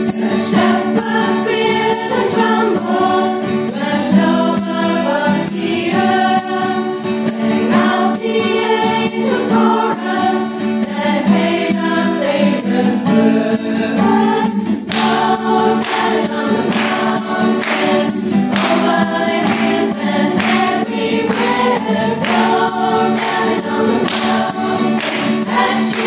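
Women's choir singing a Christmas song, accompanied by strummed acoustic guitars; the strumming comes through more strongly in the second half.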